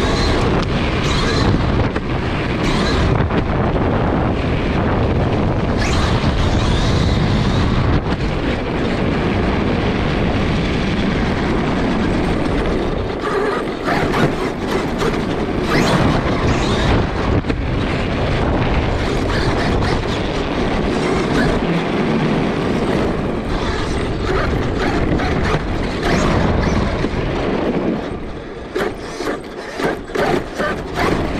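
Traxxas E-Revo 2 RC monster truck driving fast over city pavement, heard from a camera mounted on the truck itself: constant tyre, drivetrain and chassis noise with many irregular knocks from bumps. It eases off and turns choppier near the end as the truck slows.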